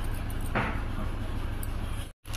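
A steady low background hum with an even hiss above it, and a brief soft rustle about half a second in.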